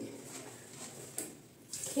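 Faint, soft swishing of fingertips massaging a gentle glycerin cleanser over damp facial skin, with one light click a little past a second in.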